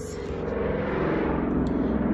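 A motor vehicle passing close by, its engine drone growing steadily louder.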